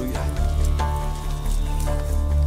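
Wind buffeting an outdoor microphone with a low, uneven rumble and crackle, under soft background music holding long, steady notes.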